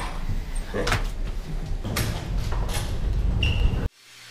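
Elevator doors sliding open over a steady low rumble, with a few knocks from handling, and a short high beep near the end.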